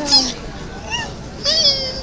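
Two short, high-pitched vocal sounds: a brief rising-and-falling one about a second in, and a longer one that falls in pitch near the end.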